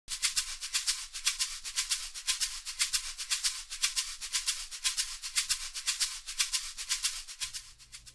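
Intro music of a fast, even shaker rhythm, about six strokes a second with no bass under it, fading out shortly before the end.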